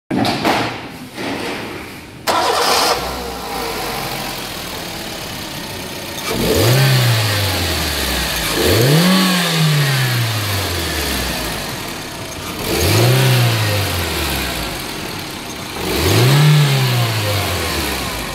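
2007 Suzuki Swift's M13A 1.3-litre four-cylinder petrol engine starting about two seconds in and then idling, with the throttle blipped four times, each rev rising and falling back to idle over about two seconds.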